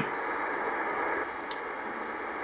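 Steady static hiss from an Icom IC-R8500 communications receiver in CW mode, tuned to the 24.930 MHz beacon frequency, with no Morse beacon audible. There is a faint click about a second and a half in.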